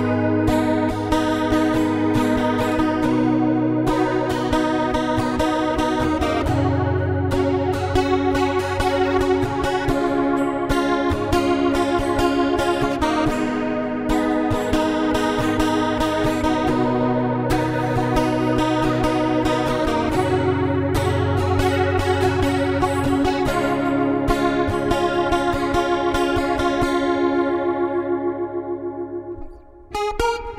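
Steel-string acoustic guitar played through a Valeton GP-100 multi-effects processor on its 'Lush Acoustic' factory preset, with chorus and hall reverb. It plays a continuous fast run of picked notes over held chords, with the bass note shifting every few seconds, and rings out and fades near the end.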